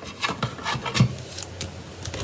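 Hands working card stock and tape pieces on a work surface: a string of small rustles, rubs and taps, one a little louder about halfway through.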